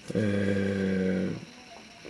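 A man's voice holding a drawn-out hesitation sound at a steady low pitch for just over a second, mid-sentence.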